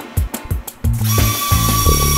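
Background music with a steady beat. About a second in, a steady electric motor whine joins it: the Arris Lander-X3 electric retractable landing skid driving its legs down.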